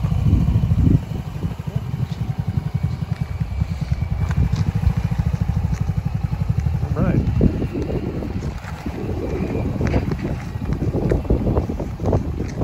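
Hammerhead GTS 150 go-kart's 149cc air-cooled single-cylinder four-stroke engine idling with a steady, even low pulse.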